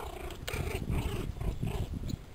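Pomeranian puppies growling as they play-fight, a rough, broken growl that grows louder about half a second in.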